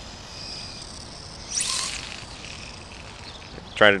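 Castle Creations 6800 brushless motor of a 1/18-scale RC18T buggy giving a thin high whine as the car drives away over asphalt, with a brief louder rising whine about a second and a half in as it accelerates.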